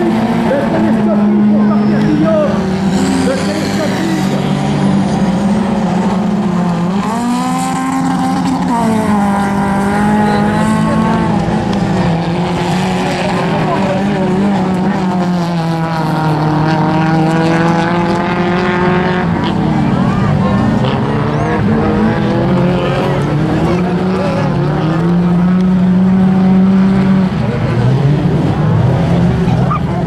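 Several race car engines running hard in a dirt-track race, their notes rising and falling through the gears as the cars accelerate and lift off, overlapping with no pause.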